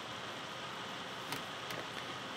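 Steady background hiss of the room and recording, with two faint clicks about a second and a half in.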